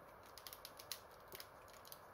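Faint, irregular small clicks and taps of a plastic Transformers figure being handled and its joints worked.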